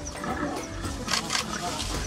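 Lions growling over a carcass they are feeding on, with a couple of sharp knocks a little over a second in.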